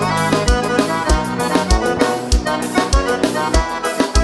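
Live gaúcho dance band playing an instrumental passage led by accordion, over a steady bass-drum beat of about three beats every two seconds.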